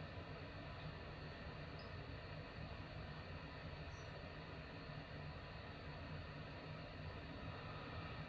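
Faint steady background hiss with a low hum underneath: room tone between spoken comments, with no distinct sound events.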